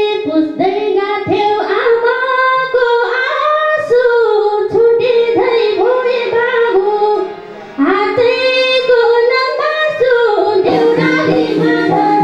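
A woman singing a Nepali lok dohori folk song into a microphone, in long held phrases with a short break about seven seconds in.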